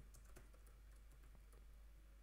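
Faint computer keyboard typing: a scatter of light, irregular key clicks.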